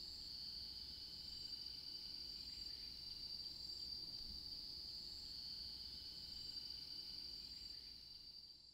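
Insects keep up a steady, high-pitched drone, with a fainter, higher chirp repeating about once a second.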